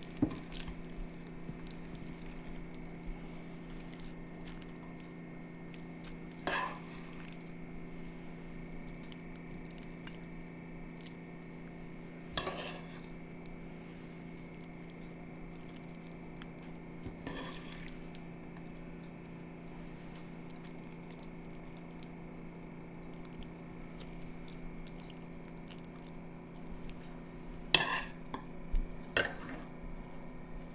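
A metal spoon and a spatula tapping and scraping now and then on a ceramic plate as saucy pieces of fried cutlassfish are served out, a few scattered clicks with a cluster near the end, over a steady low hum.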